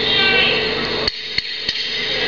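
Three sharp knocks about a third of a second apart, starting a little over a second in: punches landing on a downed fighter in an MMA bout, heard through a TV broadcast.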